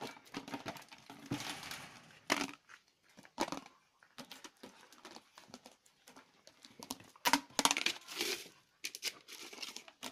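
A puppy chewing, pawing and pushing a plastic frisbee around a concrete floor: an irregular run of scrapes, clacks and crinkling plastic noises, loudest about two seconds in and again in a cluster around seven to eight seconds.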